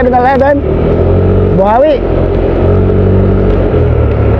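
A motor vehicle engine running at a steady, unchanging speed, with a low hum.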